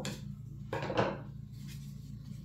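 A trading card pack being cut open by hand: a few short, sharp cutting and wrapper sounds in the first second, over a low steady hum.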